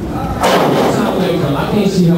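A wrestler's body slams onto the wrestling ring once, sharply, about half a second in, with a short ring-out in the hall, followed by voices.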